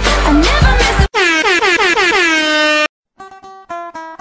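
Music with a steady beat cuts off about a second in. A loud air-horn sound effect follows, its pitch sliding steadily down for nearly two seconds, then stops dead. After a short silence, the next track starts with separate plucked notes near the end.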